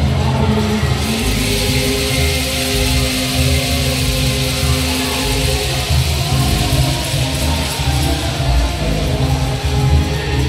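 Sung marinera norteña music: a singer holds long notes over instrumental accompaniment with a steady beat.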